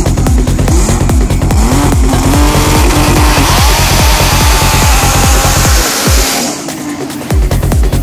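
Electronic dance music with a steady beat, mixed over a drag car's turbocharged Nissan RB26DETT straight-six revving up in rising sweeps. The tyres then spin and squeal in a burnout for several seconds before cutting off suddenly.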